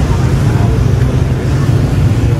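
Loud, steady low rumble of outdoor street ambience.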